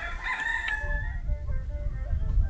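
A rooster crowing once: a single call that rises and is held, then stops just over a second in, followed by a low rumble.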